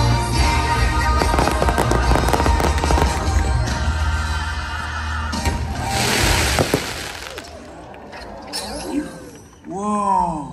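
Loud, bass-heavy holiday show music with fireworks crackling and popping over it, and a hissing rush of fireworks about six seconds in. The music ends about seven seconds in and the sound falls quieter, with a voice near the end.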